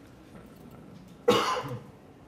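A person coughs once, a short sudden burst a little past the middle.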